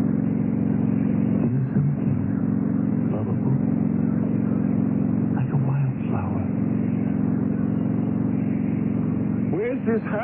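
Motorcycle engine sound effect running steadily at cruising speed, heard through the thin, narrow sound of an old radio broadcast.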